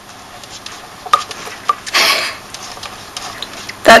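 Light clicks and taps from a pet turtle snapping at the fingers that are feeding it, with one sharp click about a second in and a short breathy rush about two seconds in.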